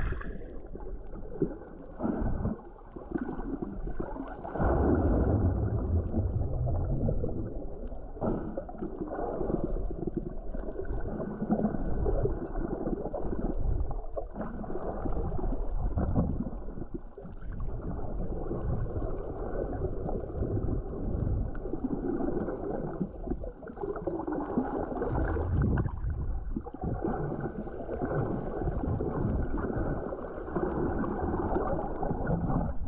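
Underwater noise picked up by a camera in a waterproof housing while snorkelling: muffled, irregular water rushing and sloshing that swells and fades.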